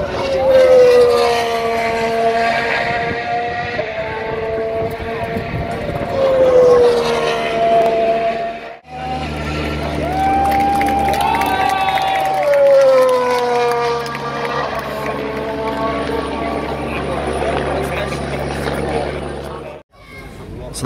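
2018 Formula One cars' 1.6-litre turbo-hybrid V6 engines passing one after another through a corner, each engine note sliding down in pitch as the car goes by. A steady low hum runs underneath in the second half.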